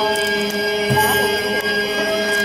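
Shinto kagura music: long steady held notes, with a single stroke of a large drum about a second in, falling together with a jingle of kagura hand bells shaken by the dancers.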